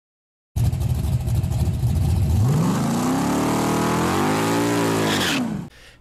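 A car engine idling, then, about two and a half seconds in, revving up and easing back down before cutting off suddenly.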